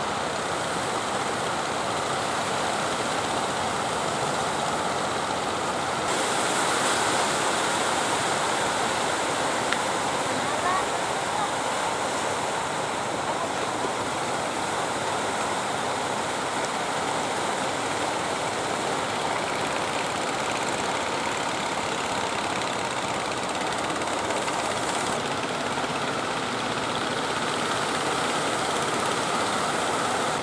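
Steady rush of surf and breaking waves at a rough river mouth, an even noise with no clear rhythm. It turns brighter and hissier about six seconds in and settles back near the end.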